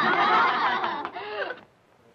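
Several people laughing together heartily, the laughter dying away about a second and a half in.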